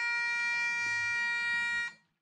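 Bagpipes holding one long steady note over the drones, cutting off shortly before the end.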